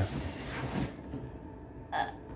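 Brief rustling noise, lasting about a second, as a boy swivels round in a leather office chair.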